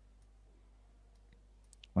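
Near silence with low room hum, broken by a few faint computer mouse clicks, most of them near the end.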